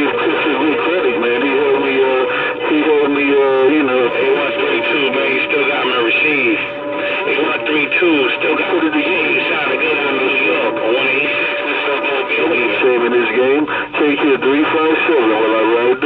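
Uniden Bearcat CB radio on channel 28 receiving a strong signal: garbled voice transmissions, too distorted to make out as words, come through its speaker in narrow radio sound, with a steady whistle tone under them.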